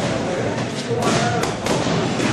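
Boxing gloves landing punches in sparring: a quick run of sharp thuds about a second in, with voices in the gym behind.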